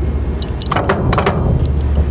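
A key turning in the ball mount's built-in receiver lock: a quick run of small metallic clicks and key-ring jingle starting about half a second in, as the locking pin extends into the receiver and locks the mount in place.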